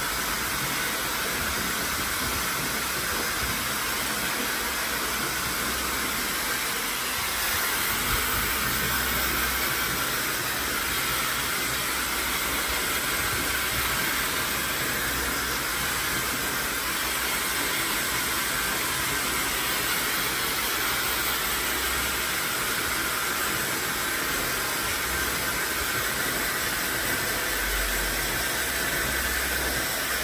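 A Dyson Supersonic hair dryer running steadily while drying wet hair: a continuous rushing hiss, a little louder from about seven seconds in.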